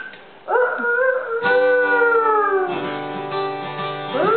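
Acoustic guitar strummed as a slow lullaby, with a voice singing one long note that slides down in pitch. A strum rings out about one and a half seconds in, and lower notes ring near the end.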